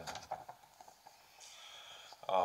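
A pause in a man's talk: his voice trails off in the first half second, then the room goes quiet, with a faint soft breath near the end before he speaks again.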